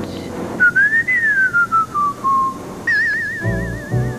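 A single whistle: a short rise, then a long slow falling glide, followed near the end by a fast warbling trill, over soft background music.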